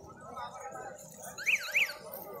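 Crowd voices murmuring, cut across near the end by a short electronic warble whose pitch sweeps up and down twice in about half a second. This is the kind of siren-type warning horn fitted to vehicles, and it is the loudest sound here.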